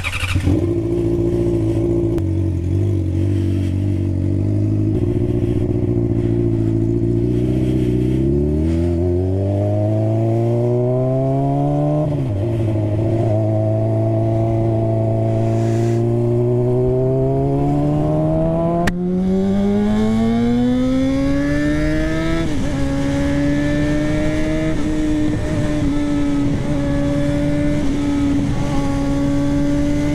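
Honda CBR600RR's inline-four engine idling, then pulling away under throttle: the engine note climbs steadily in pitch, drops suddenly at a gear change about 12 seconds in, climbs again, drops at another shift about 22 seconds in, then runs steadily at road speed.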